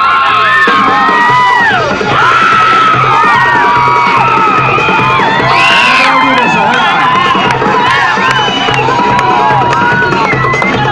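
A crowd, many of them children, cheering, whooping and shouting over loud belly-dance music with a steady repeating beat.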